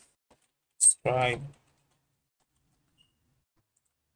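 A few faint computer-keyboard clicks as a short command is typed and run, broken by one short spoken word about a second in; otherwise near silence.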